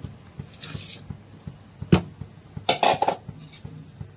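Soaked rice poured from a steel bowl into a pot of boiling water, with a sharp metal clink about two seconds in and a quick run of metal knocks of bowl on pot near three seconds.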